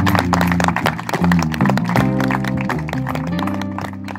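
Live acoustic music: strummed acoustic guitar chords over sustained low notes, without singing, gradually fading out.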